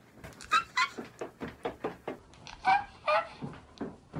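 A young woman's excited high-pitched squeals in several short bursts, mixed with a run of quick thumps.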